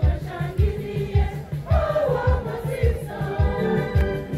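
Choir singing an upbeat church song over a steady drum and bass beat.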